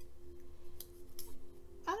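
Small craft scissors snipping through paper, a few separate light cuts while a small paper flower is cut out.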